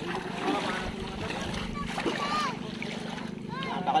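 Legs wading through shallow lake water, splashing with each step, over a steady low hum, with voices calling out near the end.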